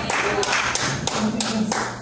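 Hands clapping in a steady rhythm, about four claps a second, with a voice sounding faintly underneath.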